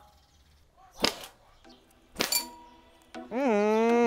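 A homemade PVC-pipe blowgun fires a nail-tipped dart with a sharp puff about a second in, and about a second later the dart strikes a glass with a short clink and brief ring. Music comes in under it, with a drawn-out shout near the end.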